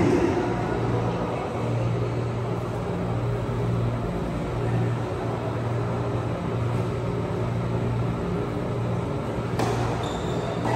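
Steady low rumble with an uneven, pulsing hum. Near the end comes one sharp knock of a tennis ball struck by a racket.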